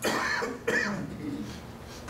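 A person clearing their throat with two short coughs, the second about two-thirds of a second after the first.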